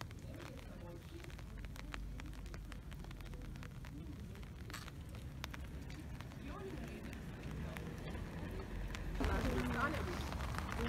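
Indistinct voices of people talking, over a steady low rumble and scattered faint clicks; a voice comes in louder near the end.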